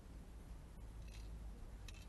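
Faint handling sounds of a small tripod phone stand being fiddled with in the hands: a brief scrape about halfway through and a sharp click near the end, over a low steady rumble.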